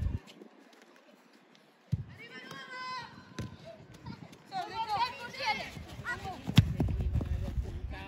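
Players and spectators shouting and calling out during a youth football match, with one sharp thud of a football being kicked about six and a half seconds in, the loudest sound. A low rumble, typical of wind on the microphone, comes and goes.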